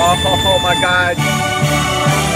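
Konami video slot machine playing its win sounds: a wavering, gliding tone for about a second, then a celebration tune with a pulsing bass starts suddenly as the win meter counts up.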